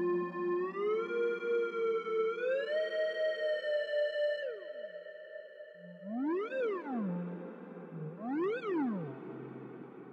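Casio CZ synth pad from the CZ Alpha sample library, with reverb, holding a tone that glides up in smooth steps and then falls away. It then swoops up and back down in pitch twice, with a pulsing level throughout.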